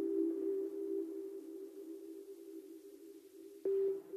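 Ambient electronic music from a Toraiz SP-16 sampler: a few soft, sustained keyboard notes, sent through delay and reverb, slowly fade. A new note comes in sharply near the end.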